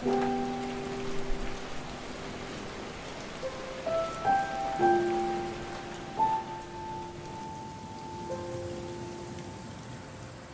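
Steady rain falling, an even hiss, under soft music of long held notes that change every few seconds.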